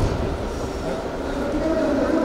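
Steady low rumble of a large indoor sports hall, with faint distant voices.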